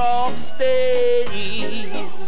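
Live rocksteady band playing, with a male vocalist singing long held notes over guitar and drums.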